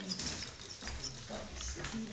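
A young kitten mewing.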